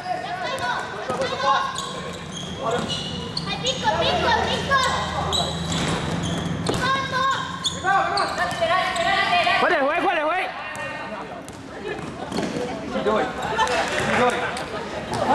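Basketball being bounced on a wooden indoor court, mixed with players' voices calling out, all echoing in a large hall.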